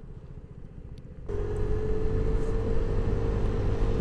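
Vespa GTS 125 scooter's single-cylinder four-stroke engine running while riding, with road noise. The sound is low and quiet at first, then about a second in turns suddenly louder, with a steady whine over the rumble.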